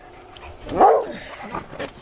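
A dog barks once, a single rough bark about a second in.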